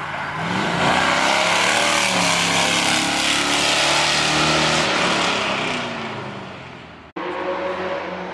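Pickup race truck accelerating hard past up the hillclimb course, its engine pitch rising as it comes on, loud as it passes, then fading away up the hill. After an abrupt break about seven seconds in, another engine is heard running steadily.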